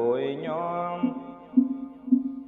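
Vietnamese Buddhist sutra chanting: a voice holding and bending a long sung syllable at the end of a recited line, then fading, while short evenly spaced knocks keep a beat about twice a second in the second half.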